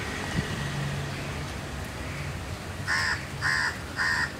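A crow cawing three times in quick succession near the end, the calls about half a second apart.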